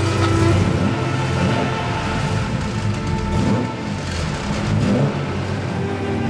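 The 3.7-litre straight-six engine of an Aston Martin DB4 GT running, its revs rising and falling a few times, over background music.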